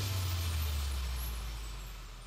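Deep bass tone of a closing music sting, sliding slowly down in pitch and fading out near the end.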